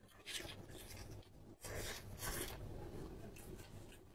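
Close-miked chewing of pork, a few short wet mouth-noise bursts as the bites are worked.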